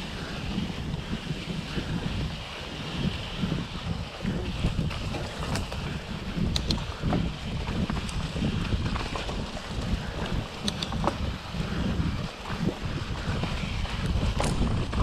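Wind rushing over the microphone of a camera on a mountain bike riding a rough dirt forest trail, with a churning low rumble and a few sharp clicks and rattles from the bike over the ground.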